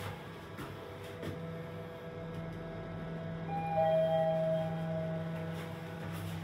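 Mitsubishi scenic passenger lift car running steadily downward, a constant low hum with a few steady tones over it. About three and a half seconds in, a brief two-note tone sounds and the level rises for about a second.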